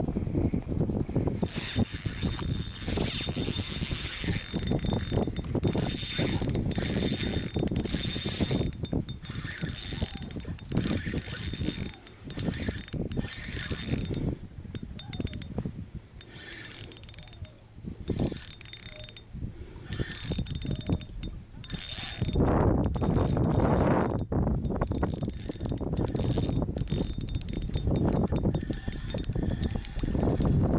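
Shimano Stradic spinning reel cranked in repeated bursts with short pauses, a mechanical whir, as a lure is retrieved. Wind buffets the microphone throughout, heavier in the last third.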